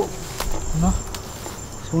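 Crickets trilling steadily in a thin high tone, with a few short rustles or footfalls in the brush and a brief vocal sound near the middle; a man's voice starts speaking right at the end.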